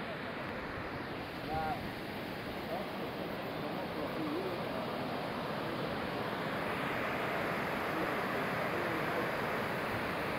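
River rapids rushing over boulders: a steady hiss of white water that grows a little fuller and brighter in the second half.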